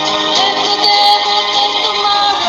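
A song with a sung vocal line over a backing track, the voice holding long notes.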